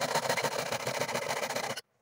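Jeweller's piercing saw cutting rapidly through a thin sheet, a dense steady rasp that stops abruptly near the end.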